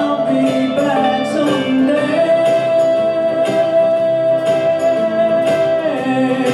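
A pop song performed with singing and band accompaniment over a steady beat; one long note is held from about two seconds in until near the end.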